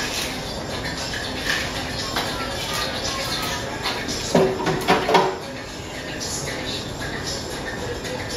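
Bar work at a cocktail station over the hum of a room full of people: several light knocks and clinks of a metal shaker and glassware in the first few seconds, then a short burst of voices about halfway through, the loudest sound here.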